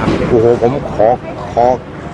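A man speaking Thai in short phrases, over a steady low background noise.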